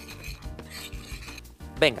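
Metal spoon scraping and stirring through a bowl of granulated sugar, icing sugar and ground cinnamon as it is mixed, a steady gritty scraping.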